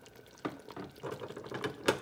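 Thick palm nut sauce simmering in a steel pot, bubbling and popping irregularly. A sharp knock near the end is the loudest sound.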